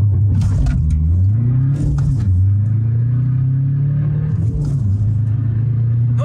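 Tuned VW Golf IV 1.9 TDI ARL diesel, about 180 hp with a straight-through exhaust, launching from a standstill with launch control and accelerating hard through the gears, heard from inside the cabin. The engine note holds steady for under a second, then climbs, dips at a gear change about two seconds in, climbs again and dips at a second shift near five seconds.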